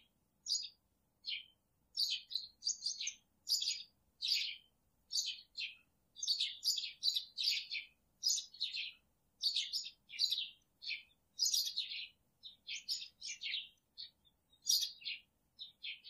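Small birds chirping: a continuous run of short, high chirps, two or three a second.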